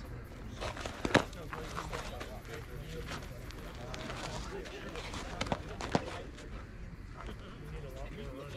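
Background chatter of softball players and spectators at a field, broken by a sharp knock about a second in and two smaller knocks between five and six seconds.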